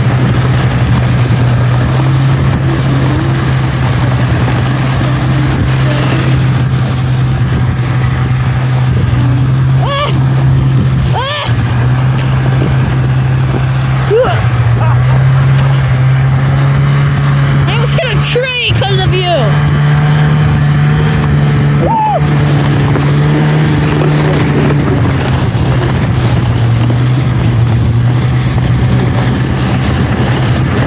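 Snowmobile engine running at a steady drone while towing a toboggan, heard from the toboggan behind it with wind and snow rush on the microphone. The engine pitch steps up about halfway through and drops back near the end. A few brief voice calls cut in, the loudest about two-thirds of the way through.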